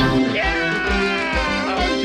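A cartoon male voice holds one long sung note that slides slowly down in pitch, over upbeat band music.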